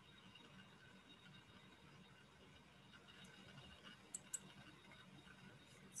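Near silence with faint room tone, broken by a few faint clicks of a computer mouse, two of them close together about four seconds in.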